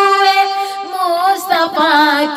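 A high solo voice singing a naat, holding one long note with vibrato, then wavering into a short melismatic run about a second in.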